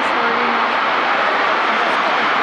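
Large arena crowd cheering and screaming in a steady roar, with a performer's amplified voice saying "thank you" early on.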